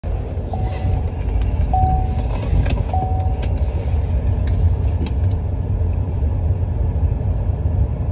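Car cabin noise while driving: a steady low rumble from engine and road. Over it, a dashboard warning chime sounds three short beeps about a second apart in the first few seconds, and there are a few faint clicks.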